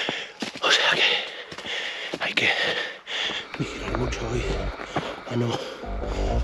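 A runner breathing hard, short loud breaths one after another while climbing a trail, with low buffeting on the camera's microphone a little past halfway.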